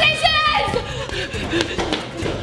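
A girl's high-pitched, wavering cry at the start, lasting about half a second, then quieter background sounds with a few light knocks.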